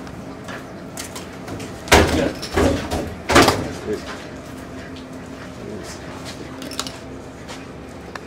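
Bass being put into a plastic laundry basket on a weigh-in scale: three loud thumps and rattles about two to three and a half seconds in, against a low steady background.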